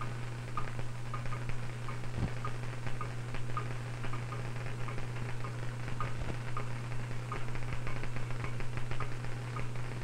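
A steady low hum with faint, irregular crackles and ticks over it.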